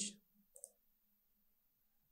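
A single computer mouse click about half a second in, followed by near silence.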